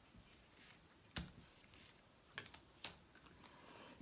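Quiet, soft clicks and taps of cards being laid down and small stones being set on them on a cloth-covered table: one sharper click about a second in, and two fainter ones later.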